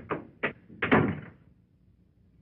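A door being shut: a few sharp knocks, then a heavier thud about a second in as it closes, followed by quiet.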